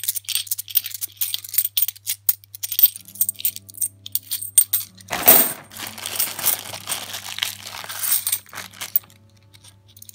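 50p coins clinking against each other as they are sorted by hand, in a run of small sharp clicks. About halfway through comes a longer rustle as a plastic bag of coins is opened and handled, with more coin clinks.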